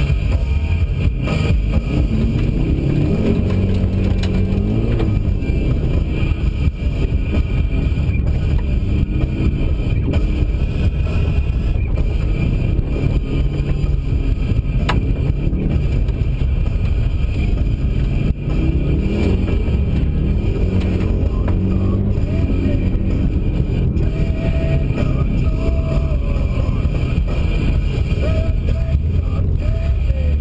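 Subaru WRX's turbocharged flat-four engine heard from inside the cabin, revving up and falling back again and again as the car is driven hard through slides, over a steady low rumble from the drivetrain and tyres.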